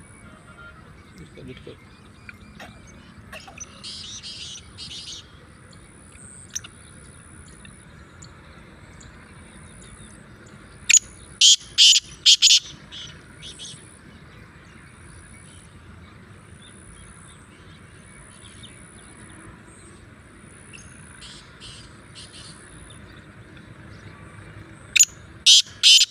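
Black francolin calling: a loud, harsh phrase of several quick notes, given twice, about fourteen seconds apart, with softer notes about four seconds in.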